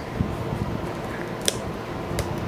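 Fingers handling and picking at the plastic shrink-wrap on a small cardboard box, small crinkles and clicks, with one sharp click about one and a half seconds in, over a steady background hum.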